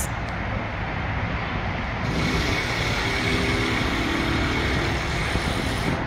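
Steady outdoor background rumble and hiss that swells slightly about two seconds in, with a faint hum in the middle.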